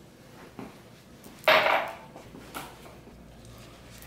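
A sweat-drenched shirt being wrung out over a drinking glass: one short burst of squeezed, wet fabric noise about a second and a half in, with a few faint taps around it.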